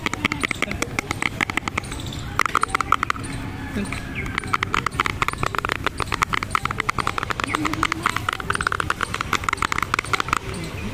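Long fingernails tapping rapidly on a small plastic cosmetic jar, in runs of quick clicks broken by short pauses.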